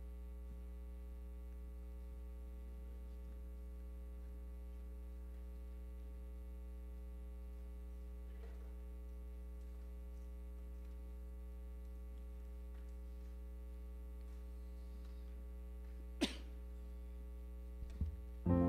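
Steady electrical mains hum, a low buzz with a stack of steady overtones, carried on the sound system. One sharp click near the end.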